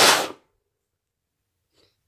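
A person sneezing once, loudly, during a cold. The sneeze is already bursting out as the sound begins and cuts off within half a second.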